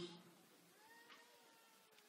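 Near silence: room tone, with one faint, drawn-out pitched sound lasting about half a second, about a second in.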